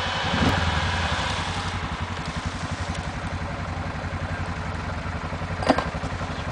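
Quad bike (ATV) engine running steadily at low revs as the machine creeps front-first into a muddy pool, with a brief sharp sound near the end.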